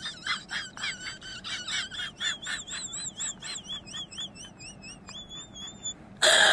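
Rapid high-pitched chirping, about four to five chirps a second, which turns into a wavering whistle-like tone about two seconds in and a short steady tone near the end.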